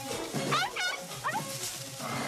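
Three or four short, sharply rising yelps from a canine in quick succession, over steady background music.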